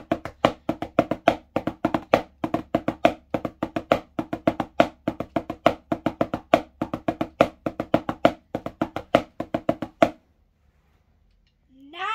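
Wooden drumsticks on a rubber practice pad playing five-stroke rolls: quick, even strokes in repeating groups that stop abruptly about ten seconds in.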